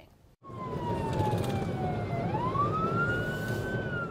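Police car siren wailing over road and engine noise heard through a squad car's dash camera. It starts about half a second in, slides down in pitch for about two seconds, then rises and holds high near the end.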